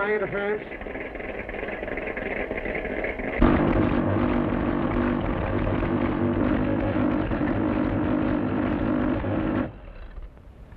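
Electrical buzzing hum of a valve-and-loop-antenna interference-tracing apparatus, a film sound effect. It starts abruptly about three seconds in, holds steady and loud, and cuts off suddenly just before the end, as the machine picks up the source of the interference. A quieter steady hum comes before it.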